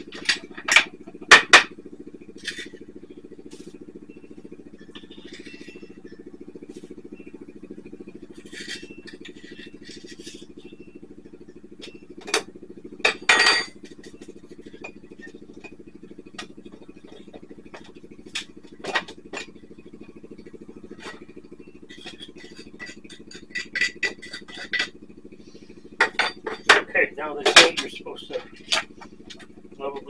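Scattered light knocks and clinks, with rapid runs of tapping near the end, as ground coffee is tipped from a wooden hand-grinder drawer into an Aeropress. A steady low hum runs underneath.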